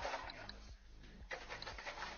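A person breathing hard in two long breaths, with a few light footsteps on ice.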